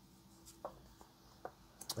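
A tarot card drawn off the deck and laid on a wooden table: faint card rustling with a few light taps, the last and loudest near the end.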